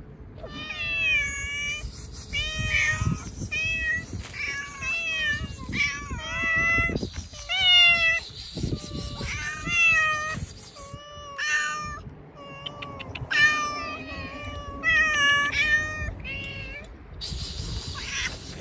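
Several hungry stray cats meowing over one another, a string of calls of about half a second to a second each that rise and fall in pitch: begging for food. A couple of brief noisy bursts break in around seven seconds and near the end.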